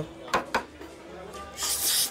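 A man eating noisily with his hands, gnawing and sucking at beef trotters: a couple of wet smacks about half a second in, then a long hissing suck near the end.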